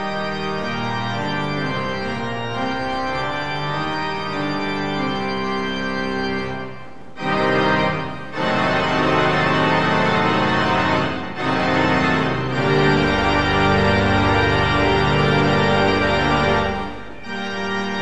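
Pipe organ playing a recessional in sustained, changing chords, with short breaks about seven and eight seconds in. From about halfway through it grows louder and fuller, with deep bass notes, then eases off near the end.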